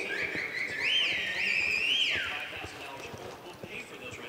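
A person whistling: one long whistle of about two seconds that rises, holds, dips and rises again, then falls away. Under it are the soft thuds of a horse's hooves loping on arena dirt.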